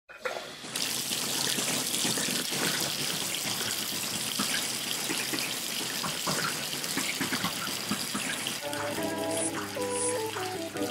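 Water running steadily from a tap into a bubble bath. About nine seconds in, a tune of held, stepping notes starts over the running water.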